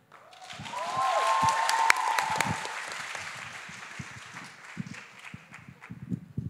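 Audience applauding, swelling about a second in and fading over the last few seconds, with a long cheering whoop from the crowd near the start.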